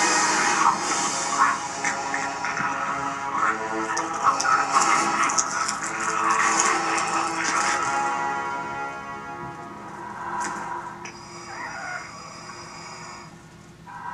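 Film soundtrack heard through the room from a TV or computer: a dramatic music score under dense crackling sound effects, as of bones cracking, fading down over the last few seconds.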